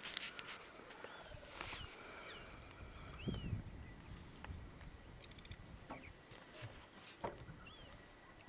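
Faint sounds from lionesses holding down a wildebeest: a low, short animal groan about three seconds in, with scattered rustling and scuffing of the struggle in dry grass.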